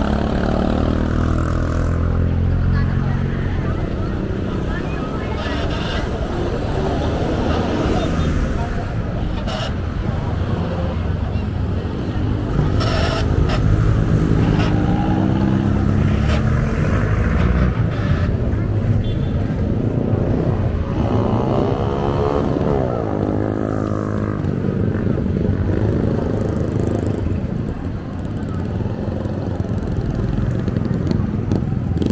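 Street traffic: motorcycle and motorized-tricycle engines passing several times, each rising and falling in pitch as it goes by, over a steady bed of road noise. People talk in the background throughout.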